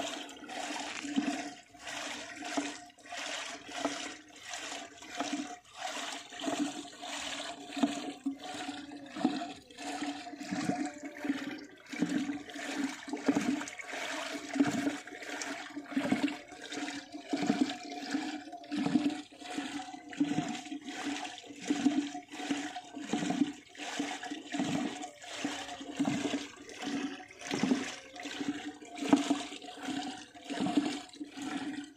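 A traditional rope-pulled wooden churning staff spinning back and forth in a pot of milk, the liquid sloshing and swishing in a steady rhythm of about three strokes every two seconds. The milk is being churned by hand to bring out butter.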